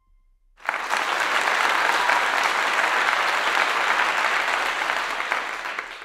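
Audience applauding: the clapping starts about half a second in, holds steady, and dies down near the end.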